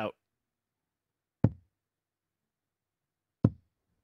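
Two darts striking a bristle dartboard, two sharp thuds about two seconds apart with silence between them: the last throws of a match-winning double checkout.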